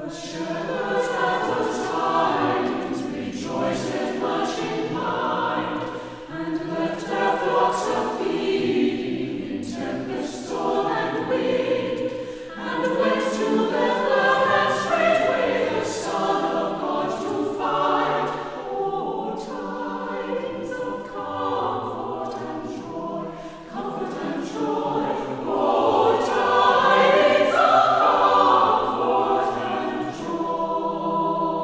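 A choir singing, as recorded music that starts abruptly and then carries on at a steady loudness.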